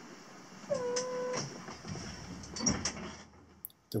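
The cabin of a sailing yacht under sail: a steady hiss, with a single short squeaky creak about a second in and a few light knocks after it, as the boat works in the sea.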